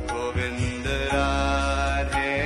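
Devotional kirtan: voices chanting a mantra over continuous instrumental accompaniment.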